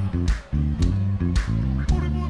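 Live band playing: a bass guitar line moving note to note under guitars, with a drum hit about every half second.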